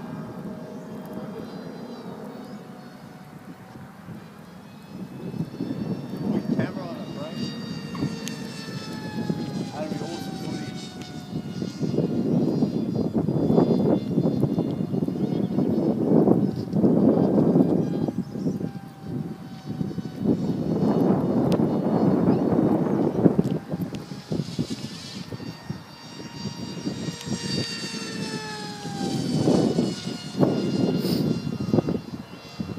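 Multiplex Funjet Ultra RC jet's electric motor and pusher propeller whining as the model flies passes, the pitch sliding down and up as it comes and goes. Surges of low rushing noise come and go through it.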